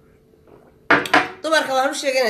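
A ceramic mug set down on a glass tabletop: a sharp clink about a second in and a second knock just after.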